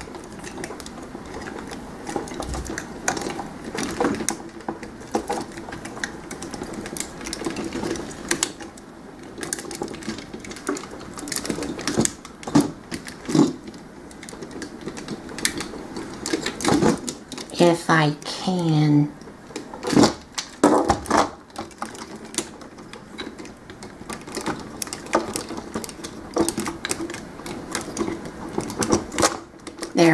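Irregular clicks, snaps and light knocks of a Transformers Masterpiece Optimus Prime toy figure's jointed parts being turned, folded and pushed into place by hand. A brief voice sounds about halfway through.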